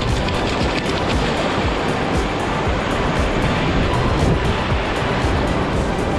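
Shallow surf washing in over sand, with background music playing over it.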